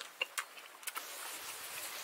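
A few faint, short smacking clicks from a man's lips and mouth as he tastes hot curry gravy off his fingers, clustered in the first second.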